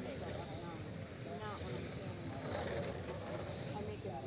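Electric radio-controlled race cars running laps on an oval track, mixed with indistinct voices talking.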